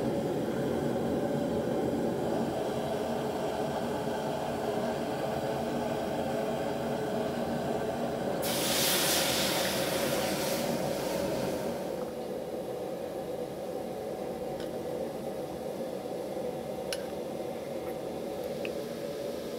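Open flame burning steadily under an empty wok. About eight seconds in, water is poured into the hot steel wok and hisses loudly as it flashes to steam for about three seconds, then settles to a quieter bubbling over the flame.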